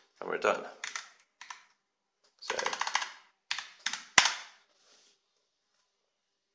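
Computer keyboard keys struck a few times in quick succession, typing a short shell command; the last stroke is the loudest.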